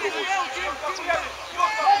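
Speech: spectators' voices talking and calling out, with a short "no, no" near the end.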